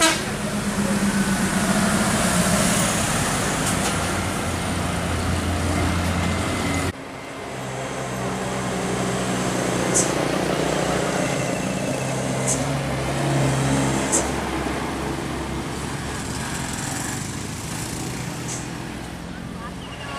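Diesel engines of tour buses pulling round a tight bend at close range: a steady low drone. It cuts off abruptly about seven seconds in, and another bus engine drone takes over.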